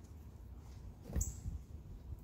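Quiet room tone with one short, faint click a little over a second in.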